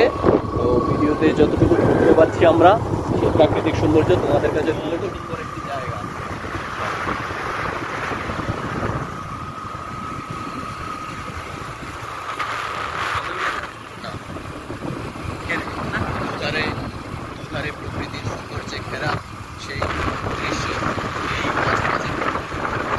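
Motorbike riding along a road: a steady run of engine and road noise with wind buffeting the microphone, and a thin steady whine for a few seconds about a third of the way in.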